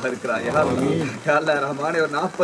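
A man's voice reciting a prayer aloud at the graveside, its pitch rising and falling in long drawn-out phrases.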